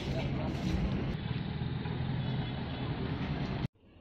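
Street traffic: vehicle engines running close by, with voices of passers-by mixed in. It cuts off suddenly near the end to a much quieter background.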